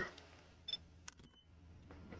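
Faint shutter clicks of a Panasonic Lumix camera taking a picture with a Godox V1 flash, about two-thirds of a second and one second in, followed by a brief high beep.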